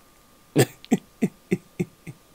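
A man laughing: a run of about five short, low hooting 'ho' sounds, each dropping in pitch, the first loudest and the rest growing fainter.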